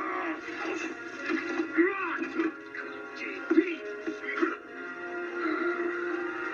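Movie trailer soundtrack played through a television speaker: music under a man's straining grunts and vocal effort noises.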